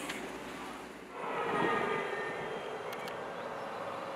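A vehicle driving by: engine and tyre noise that swells about a second in, then settles to a steady hum.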